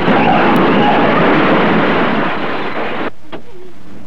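A car crashing into a truck in an early sound-film soundtrack: a loud, noisy crash and clatter that cuts off abruptly about three seconds in.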